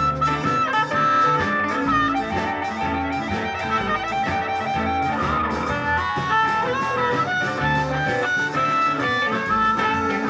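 Live blues band: a harmonica cupped against a handheld microphone plays a solo line over guitar, bass and drums, with a cymbal ticking out a steady beat.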